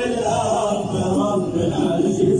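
A group of men singing a chant-like song together, the voices held and moving in pitch without a break.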